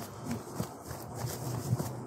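Soft, uneven footsteps and light rustling on dry winter grass, over a low outdoor rumble.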